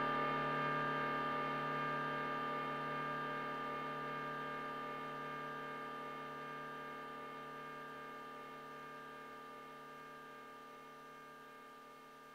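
Behringer DeepMind 6 analogue polysynth holding a sustained ambient chord, its effects included, fading slowly and steadily away as the piece ends.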